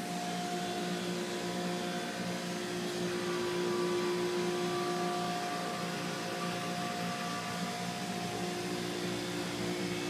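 A steady mechanical hum with several constant tones, like a running electric motor or fan, holding an even level throughout.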